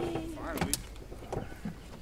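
A drawn-out voice tails off, then a few light knocks and clicks from the car's rear door and body as someone climbs out of the back seat.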